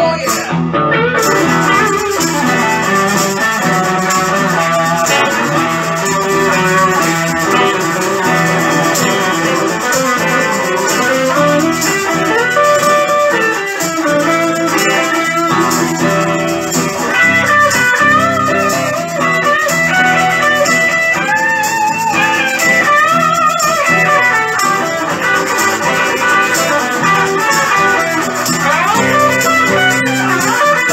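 Electric guitar playing an instrumental lead over a steady accompaniment, its notes bending up and down in the middle of the passage.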